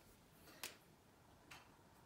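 A marker tip tapping against a whiteboard twice, about a second apart: two short, faint ticks over near silence.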